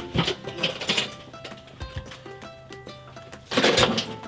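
Background music playing, and about three and a half seconds in a loud, brief crash as a loaded wheelbarrow tips over onto its side.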